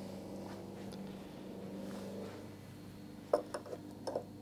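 A few light clicks and knocks near the end as a wooden fretboard is shifted and set down on a guitar body. Before that there is a steady low hum that fades out about halfway.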